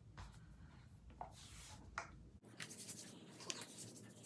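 Faint rustling and soft ticks of clothes being handled and moved. The low background hum drops out abruptly about two and a half seconds in.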